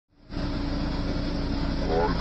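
JCB 3DX backhoe loader's diesel engine running steadily with a low, even hum, heard from inside the operator's cab.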